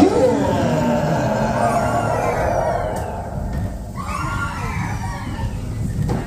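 A loud scream-like cry with sweeping, wavering pitch starts suddenly, and a second cry begins about four seconds in. It comes as a dark ride's giant were-rabbit figure appears.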